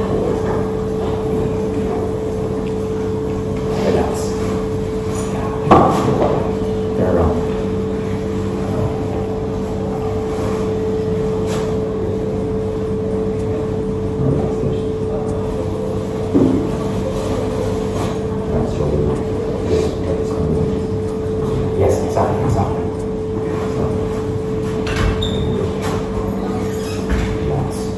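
A steady hum with a few scattered knocks and faint murmurs over it.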